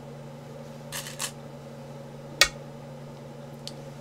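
A Go stone is set down on the wooden board with one sharp click about two and a half seconds in, the move Black plays to enclose the corner. A brief rattle of stones being taken from the bowl comes about a second in, over a low steady hum.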